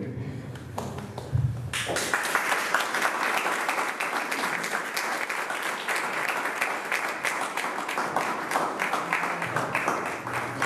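Applause from a crowd, many hands clapping at once. It starts about two seconds in and holds at an even level.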